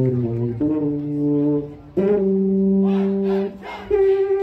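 College marching band's brass playing loud sustained chords: several short chords in the first half, a brief break, then one long held chord, a short drop, and a new chord attacked near the end.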